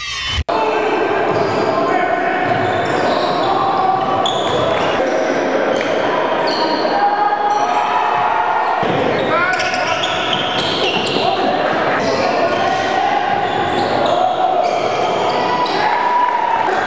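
Live basketball game sound in a gymnasium: a basketball bouncing on the hardwood court, with voices of players and spectators echoing in the hall.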